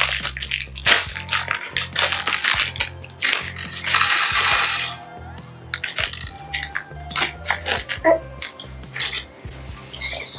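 Clear plastic bags of Lego pieces being opened and handled: the plastic crinkles and small plastic bricks clink and rattle inside, in many short clicks. There is a longer rustle of plastic about four seconds in.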